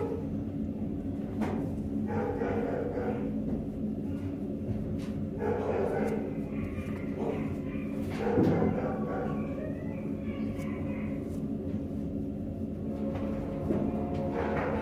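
Steady low hum with muffled voices and dog barks coming and going in the background, the loudest burst about eight seconds in.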